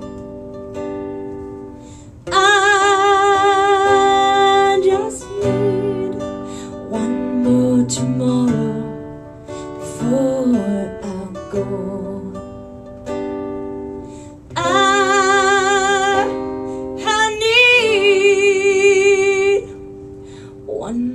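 A live acoustic country song with no lyrics in this passage: acoustic guitar under a long, wavering held melody line that comes in twice, about two seconds in and again near the end.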